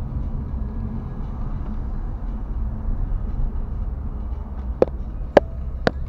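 Steady low road and engine rumble inside a moving car's cabin. Near the end a turn-signal indicator starts ticking, three even ticks about half a second apart.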